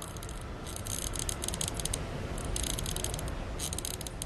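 Fast, high-pitched clicking in short runs with brief gaps, over a low, steady background rumble.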